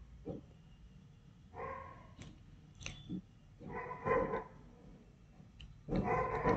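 A dog barking faintly in the background: a few separate barks, with a low steady hum underneath.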